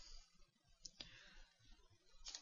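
Near silence, with two faint clicks of a computer keyboard a little under a second in, as a line break is typed into the caption text.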